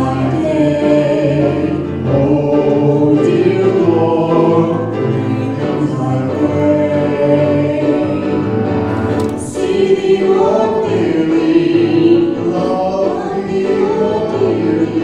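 A man and a woman singing a duet into microphones over a musical accompaniment, with long held sung notes.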